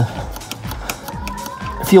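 Background music during a pause in speech, with a held note and a ticking beat.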